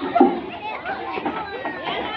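Many children's voices chattering and calling out at once, with no single clear speaker; one louder voice stands out just after the start.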